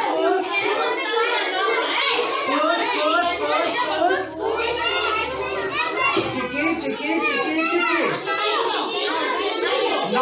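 Many children's voices at once, chattering and calling out together in a crowded classroom.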